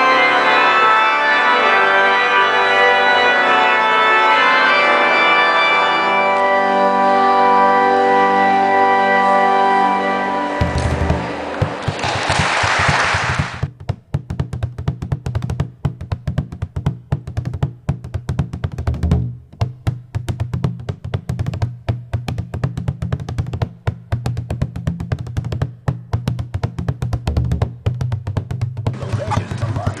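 Pipe organ playing sustained chords for about ten seconds. The sound then cuts abruptly to a low steady hum thick with rapid crackling clicks, with a brief burst of hiss soon after the cut.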